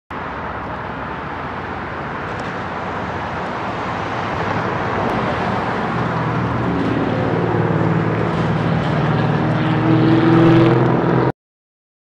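Street traffic noise that grows steadily louder, with the steady hum of an articulated city bus's engine coming in about halfway and strengthening as the bus drives past. The sound cuts off abruptly shortly before the end.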